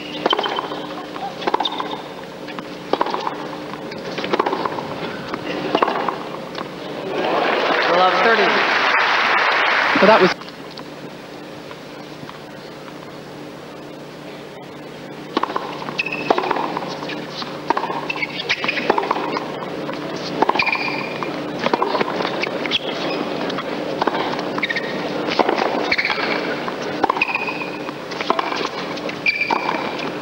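Tennis match sound: racket-on-ball strikes and bounces during rallies, with crowd voices around them. A burst of crowd applause swells about seven seconds in and cuts off suddenly a few seconds later.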